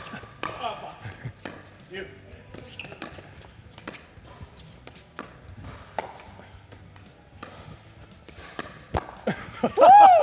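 Pickleball rally: sharp hits of sandpaper-faced paddles on a plastic pickleball and the ball bouncing on the court, about every half second. A player shouts loudly near the end.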